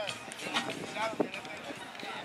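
Indistinct men's voices calling out across an open football pitch during a team warm-up, with a few sharp clicks.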